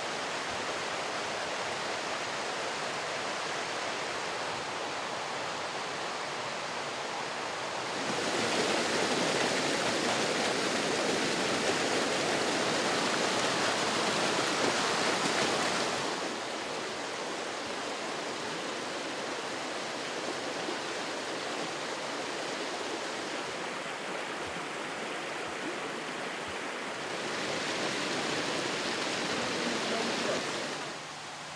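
A rocky mountain river rushing, a steady noise of running water. It grows louder for several seconds in the middle and again near the end.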